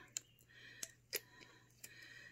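Four faint clicks spread over about two seconds: a glass tincture dropper tapping against the rims of the water bottle and its amber glass dropper bottle while drops are dispensed and the dropper is put back.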